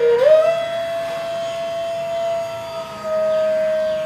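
Indian classical music: a flute holds one long note, gliding up into it at the start and stepping slightly lower about three seconds in.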